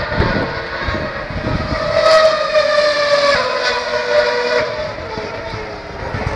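A Formula One car's 2.4-litre V8 engine screaming at high revs on the circuit. Its pitch drops suddenly twice, a little past three seconds and again past four and a half, and it grows quieter near the end.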